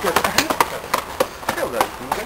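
Quick footsteps of a person running up concrete steps: a string of short, sharp taps, several a second, with faint voices behind.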